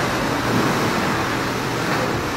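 Water in an indoor swimming pool sloshing in waves set going by an earthquake: a steady rushing noise.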